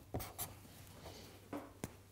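Felt-tip marker drawing on paper: a few short, faint scratchy strokes as small triangles are drawn.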